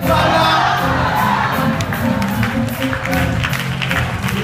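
Church music, steady held chords over a low bass, playing under a congregation that cheers and shouts.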